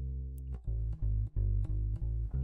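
Electric bass guitar recorded direct into the audio interface with no amp, a clean dry tone: one held note, then a run of separate plucked notes from about halfway through. It is being played for an input level check after its volume was turned down to stop the input clipping.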